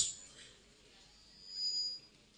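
A pause in a man's sermon over a microphone and PA: his last word dies away in the hall's echo, then a faint short sound with a thin high whistle comes about one and a half seconds in.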